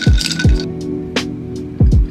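Background music with a steady deep beat. Over it, ice cubes clink against a tall drinking glass as an iced latte is stirred with a glass straw, stopping about half a second in.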